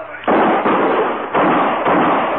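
Radio-drama sound effect of gunfire: three sudden shots, each with a long echoing decay, heard on a band-limited old broadcast recording.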